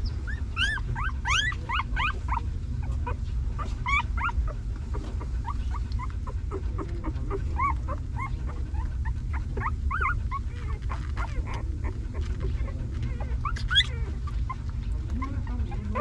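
Newborn puppies whimpering and squeaking in short high calls, a quick flurry in the first two seconds, then scattered calls, with one louder squeal near the end, over a steady low rumble.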